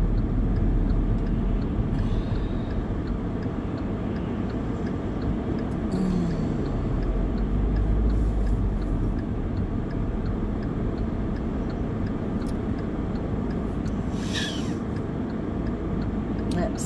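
Car cabin noise while driving: a steady low rumble of engine and road noise, with a brief rise in engine pitch about six seconds in and a faint regular ticking.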